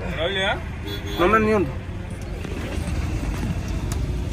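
A person's voice calling out twice in short phrases that rise and fall in pitch, over the steady low rumble of a car and street traffic.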